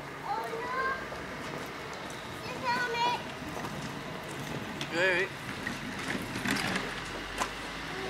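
Mostly voices: several short, high-pitched wavering calls from a child, with "oui, oui" spoken about halfway through, over a general outdoor background hubbub.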